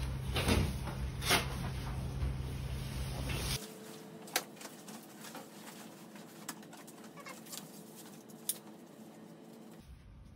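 Lead aprons and their hangers being handled on a rack: a few sharp clicks over a steady low hum. About a third of the way in the sound drops abruptly to a quieter room with a faint steady hum and occasional soft clicks as the apron is put on and fastened.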